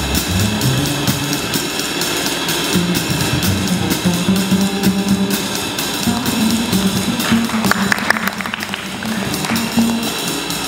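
Live jazz combo playing: plucked double bass moving through short low notes under a drum kit whose cymbals keep a steady, busy pulse, with a brief flurry of higher sounds about eight seconds in.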